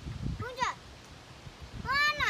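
A young child's voice giving two short high-pitched cries, each rising and falling in pitch, the first about half a second in and the second near the end.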